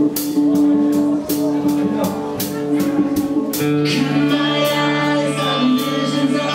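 Live rock band playing a song's intro: sustained electric guitar notes over regular cymbal hits, with a fuller, lower guitar chord joining in a little past halfway.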